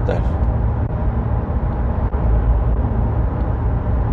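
Steady road noise inside a moving car's cabin at highway speed: a constant low rumble of tyres and engine.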